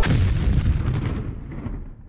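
Explosion sound effect: a boom the moment the music cuts off, then a rumble that fades away over about two seconds.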